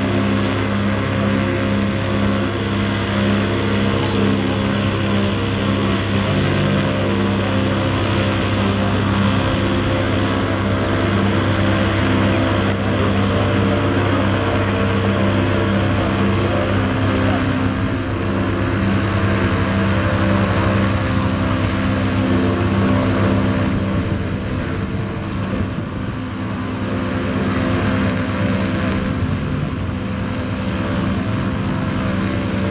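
Homemade single-seat micro helicopter in flight: its engine and rotors running steadily with an even, unbroken drone.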